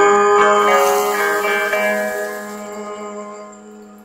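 A band's final guitar chord held and ringing out, fading steadily away to almost nothing by the end as the song closes.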